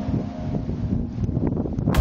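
Wind blowing across the camera microphone in uneven gusts, a low rumble that rises and falls.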